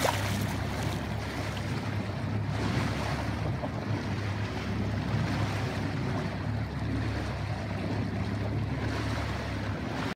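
Boat under way: its engine is running with a steady low hum under the rush of water along the hull and wind buffeting the microphone. A brief louder burst of noise right at the start.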